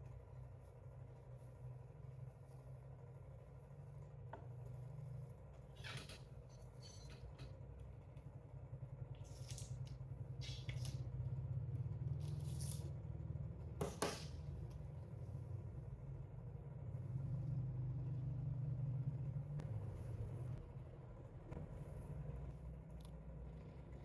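Faint rustling and squishing of fingers massaging mayonnaise through damp hair, with a few short scrapes scattered through and one sharper click about halfway, over a low steady hum.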